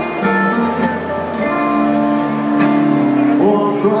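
Live rock band music in an arena, led by guitar, with long held notes.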